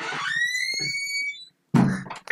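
A high whistle-like tone that slides up at first, then holds for about a second and a half before cutting off. A sudden louder thump follows near the end.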